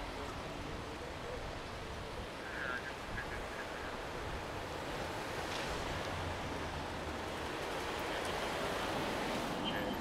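Steady rushing noise of outdoor traffic, growing a little louder over the second half as a vehicle draws closer.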